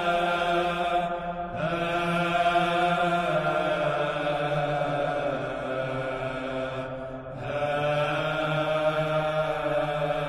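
Background music of slow chanting: long held sung notes that shift to new pitches after brief breaks, about a second and a half in and again around seven and a half seconds in.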